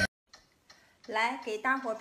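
About a second of near silence with a couple of faint clicks, then a woman speaking Mandarin.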